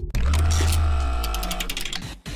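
Logo-transition stinger: a deep bass hit that starts suddenly and fades out over about a second and a half, with layered tones above it and a run of fast, sharp high ticks about halfway through.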